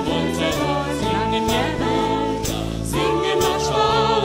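Small vocal ensemble singing in harmony over band accompaniment with a steady beat, the voices holding long notes.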